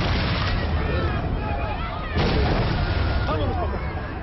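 Artillery shells exploding: a sudden blast about two seconds in over a continuous low rumble, with people shouting and screaming in panic.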